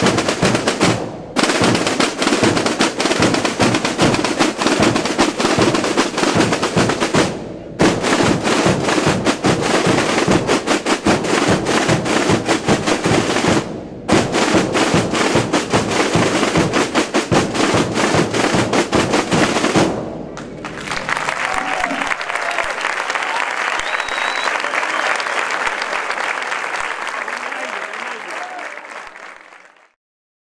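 Calanda's Holy Week drums, snare drums and bass drums (tambores y bombos), beating fast and continuously for about twenty seconds, with three brief breaks. Then crowd noise takes over and fades out near the end.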